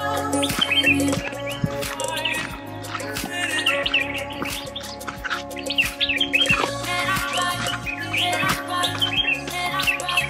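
Background instrumental music with bird chirps over it.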